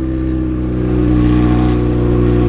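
Yamaha XJ6's 600 cc inline-four, fitted with an open straight-pipe exhaust, running steadily under way at an even engine speed and growing slightly louder.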